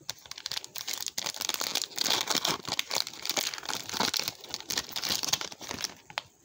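Foil wrapper of a Panini Mosaic basketball card pack being crinkled and torn open by hand. It makes a dense crackling rustle that is loudest in the middle and stops at the end.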